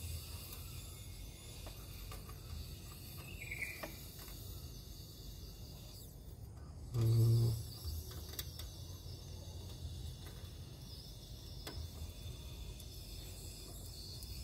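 Quiet steady low hum and faint hiss of background noise, with a short hummed voice about seven seconds in and a few faint ticks.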